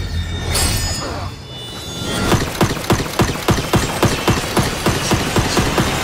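Action-film fight sound effects: a low rumble with whooshes, then a rapid run of sharp impacts, about four a second, for the last few seconds.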